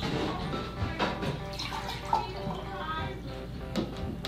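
Water being poured from a small cup into a glass container, a light trickling splash, with background music playing.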